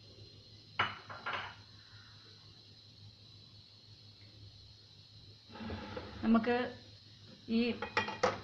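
Dishes clinking: two sharp, ringing knocks about a second in as bowls on a serving tray are set down or touched together. A short stretch of voice follows near the end.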